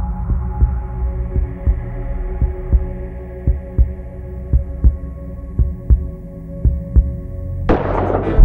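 Heartbeat effect in a film soundtrack: a low double thump about once a second over a steady low drone. A sudden loud hit comes near the end.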